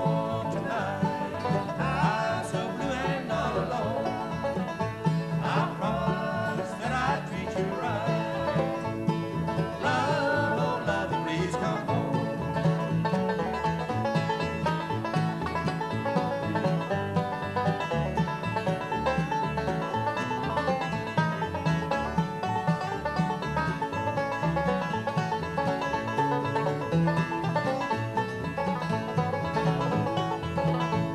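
Acoustic bluegrass band playing: banjo, mandolin and acoustic guitar over a steady upright bass pulse.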